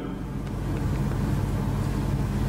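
Steady low rumble of background room noise picked up by the lecture microphone, with no distinct events.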